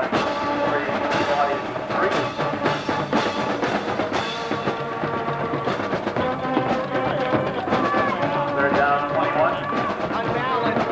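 Band music with drums and brass, playing steadily with a regular beat.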